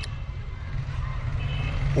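A pause in a man's amplified outdoor speech, filled by a steady low rumble of background noise and a few faint high tones.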